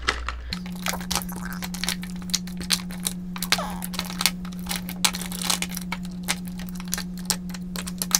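Plastic and metal lipstick tubes clicking and clattering against each other and the wooden drawer as hands sort through them, many quick irregular clicks.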